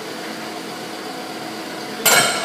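Steady background noise: an even hiss with a faint constant hum and no distinct events.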